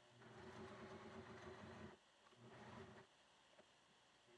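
Electric sewing machine running faintly in two short bursts, the first about a second and a half long and the second under a second, stitching a seam through layered fabric.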